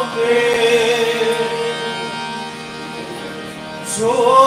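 A man singing a long held note to harmonium accompaniment; about halfway through the voice drops away and the harmonium's reeds sound on alone, more quietly.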